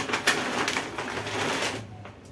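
Shopping bag rustling and crinkling as groceries are taken out of it, stopping near the end.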